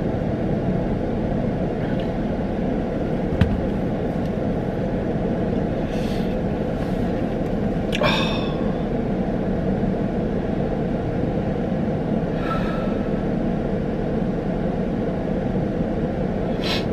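Steady running hum inside a stationary car's cabin, with a man sighing heavily several times, the longest about eight seconds in, and a single sharp click a little over three seconds in.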